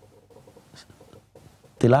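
A man's lecturing voice pauses, leaving faint room noise with a low hum and a few soft small sounds. His speech starts again near the end.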